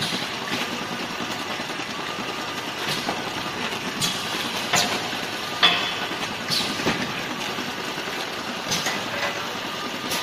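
Automatic case packing machine running: a steady mechanical noise broken by irregular sharp clacks, bunched from about four seconds in.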